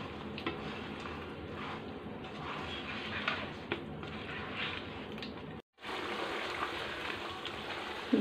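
Wild duck meat and yogurt sizzling gently in a nonstick wok on a low flame, with a spatula stirring and scraping through it in light strokes every second or so. The sound cuts out for a moment about two thirds of the way through.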